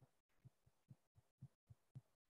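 Near silence, broken by four or five faint, short low blips.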